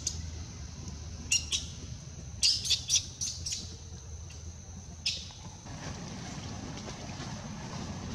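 Short, high-pitched chirping animal calls: two about a second in, a quick run of several around three seconds in, and one more near five seconds, over a steady low rumble.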